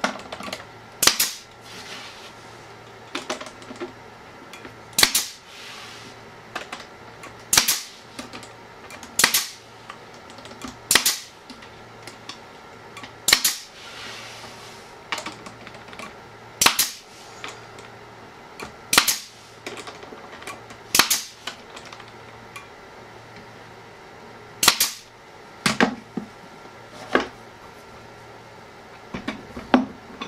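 Pneumatic brad nailer driving 1¼-inch galvanized brads into the bat house's wooden front panels: a sharp shot every second or two.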